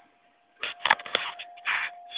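Phone handling noise: a quick run of clicks and scraping knocks as the phone is moved, over a faint steady whine.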